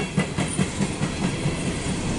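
Empty coal hopper cars of a freight train rolling past in a steady rumble, with a few sharp wheel clicks near the start.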